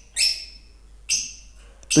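Lovebird chick, about fifteen days old, giving two short, harsh calls about a second apart.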